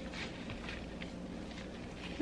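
Faint, soft squishing and patting of raw ground-meat mixture as gloved hands mold it into a loaf in a glass baking dish.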